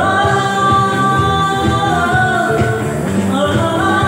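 Live worship band playing: a sung vocal line with long held notes over electric bass, keyboard and a beat struck with sticks on an electronic drum pad.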